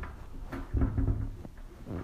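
A QNAP TS-853A NAS enclosure being turned around on a hard tabletop: a light knock about half a second in, a low rubbing rumble around one second as the unit slides, and another faint knock near the end.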